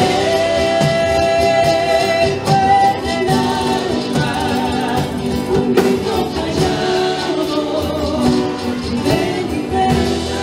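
Andean folk band playing live: charango and nylon-string acoustic guitar strumming over hand percussion, with a melody sung in long held notes.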